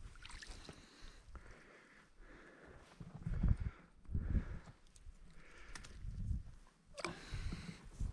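Faint crunching and rustling of boots and clothing on snow-covered ice as an angler shifts about beside an ice-fishing hole, in soft scuffs about every second.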